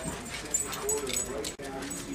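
A puppy whimpering in short pitched whines during play, with a few small clicks and knocks.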